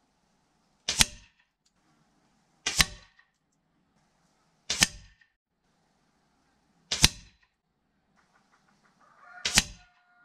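Five sharp shots, about two seconds apart, from a Hatsan break-barrel air rifle in 6.35 mm (.25), the pellets striking a paper target on a wooden board, each a quick crack with a short tail.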